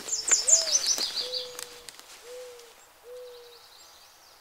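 Owl hooting: one hoot that lifts in pitch and falls back over the first second, then three shorter, even hoots. A small bird's quick trill steps down in pitch over the first second and a half.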